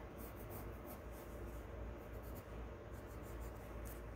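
Pencil scratching on paper in short sketching strokes, in a few separate runs of lines.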